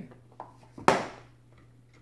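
A toy dart striking a dartboard: one sharp knock about a second in, with a couple of faint taps just before it.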